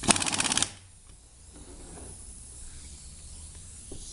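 Air-powered bottle capping machine's spinning chuck tightening a flip-top screw cap: a loud rapid clatter lasting under a second, then it stops.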